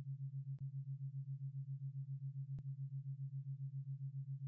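Binaural-beat tone: a steady low hum whose loudness pulses evenly about five times a second.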